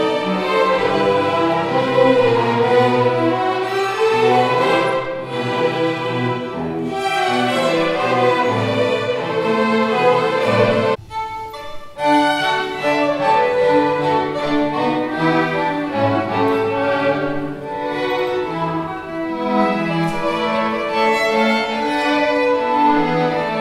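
String orchestra of violins and cellos playing classical music, with a sudden break about halfway through before the playing resumes.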